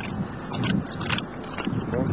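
Water poured from a plastic bottle splashing onto a man's hands as he rinses and rubs them, with a couple of sharper splashes, over a low background rumble.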